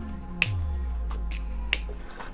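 Two sharp clicks about a second and a quarter apart from a hand tool working on an old amplifier's speaker wiring, over a low hum.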